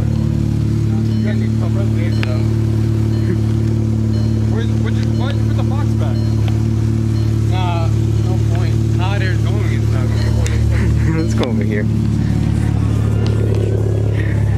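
A car engine idling with a steady low hum that does not change, with people's voices over it around the middle.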